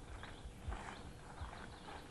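Faint outdoor ambience: a few light knocks and thuds, the two heaviest about two-thirds of a second and a second and a half in, with birds chirping faintly.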